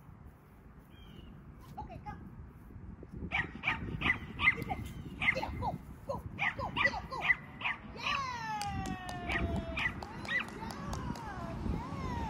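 A small dog barking excitedly in quick, high-pitched yips for several seconds while running a line of jumps, then one long call that falls in pitch.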